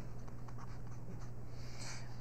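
Faint scratching of a stylus writing letters on a graphics tablet, over a steady low hum.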